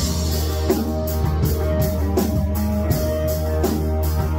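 Rock band playing live in a rehearsal room: electric guitars over a drum kit, with sustained guitar notes and regular drum and cymbal hits.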